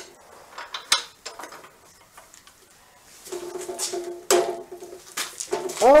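Scattered metal clinks and rattles as square steel tubing is set in a chop saw's vise and the vise is clamped down, with a quiet stretch in the middle.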